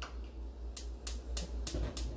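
Gas range's electric spark igniter clicking rapidly as the burner knob is turned to light the front burner, about three sharp clicks a second starting under a second in.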